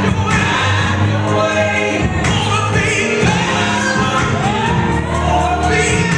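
Gospel song with a choir singing over sustained bass notes, played back over a loudspeaker in the room.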